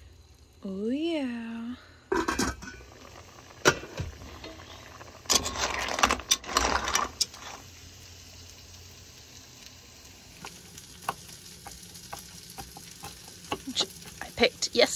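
Food sizzling as it fries in a skillet on a gas stove. Around the middle come bursts of metal clatter from pot lids and stirring utensils, and a few knife taps on a cutting board come near the end.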